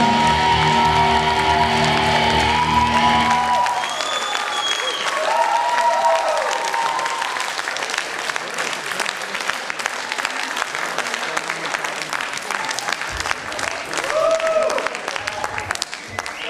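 A rock band's last chord rings out on electric guitars and bass and stops about four seconds in. Then the audience applauds, with a few shouts over the clapping.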